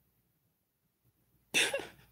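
Near silence, then a person's single short cough about one and a half seconds in.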